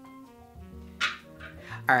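Background music of slow, held notes, with a short loud sound about a second in.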